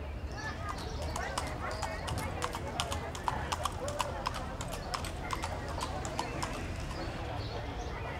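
A horse's hooves clip-clopping on a paved street: a quick run of sharp clicks that comes in about a second in, is loudest about halfway through and thins out near the end.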